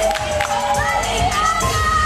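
Crowd of wedding guests cheering and shouting, with long, drawn-out high cries, over dance music with a steady bass beat.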